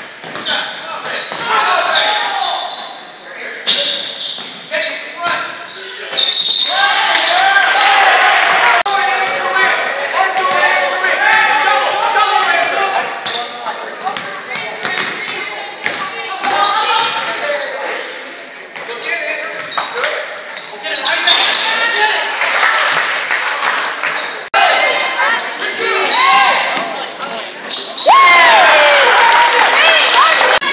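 Basketball game in a gymnasium: the ball bouncing on the hardwood court among shouting players and spectators' voices, all echoing in the large hall.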